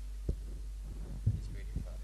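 Steady low electrical mains hum from a church sound system, broken by three dull thumps, about a third of a second in, a little past one second, and near the end.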